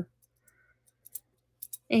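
Near silence broken by a few faint clicks about a second in and again near the end: the small metal charms of a dangle kilt-pin brooch tapping together as it is held and moved in the hand.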